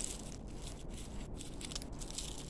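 Faint, irregular crinkling of dry rosary pea (Abrus precatorius) seed pods being moved around in the palm of a hand.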